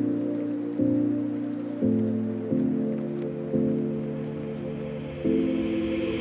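Background music: soft, sustained low chords that change about once a second, with no singing.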